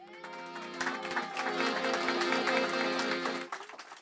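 Piano accordion playing the opening of a song: held low notes under short repeated chords and a melody line, dying away briefly just before the end.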